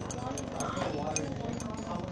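Glass stirring rod clinking against the inside of a glass beaker as a copper(II) sulfate solution is stirred: several light, irregular clinks over a murmur of classroom voices.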